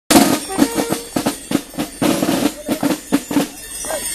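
Carnival band drum beating a fast, uneven run of strikes and short rolls, the drumming for a gilles' dance.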